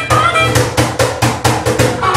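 Live acoustic band playing an instrumental passage: a harmonica holds melody notes over bass guitar and a fast, steady hand-percussion beat.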